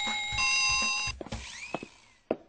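Two-tone ding-dong doorbell chime: a higher second tone joins the first about half a second in, and both ring together until they stop about a second in.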